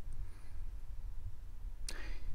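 Quiet room tone with a steady low hum, and a single sharp click near the end.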